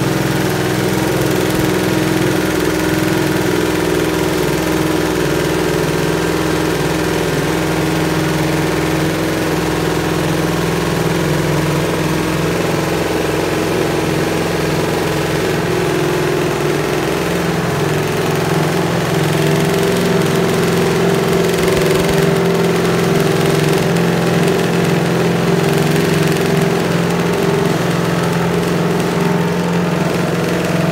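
Ducati MotoGP racing bike's V4 engine running steadily and loud, its pitch and level creeping up slightly about two-thirds of the way through.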